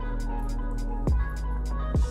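Background music with a steady beat: quick hi-hat ticks about four a second over a low bass line, with two deep falling bass hits, about a second in and near the end.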